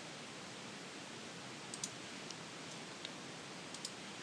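Soft clicks of a computer mouse over a steady low hiss of microphone noise: a pair about two seconds in, one near three seconds and two more near the end.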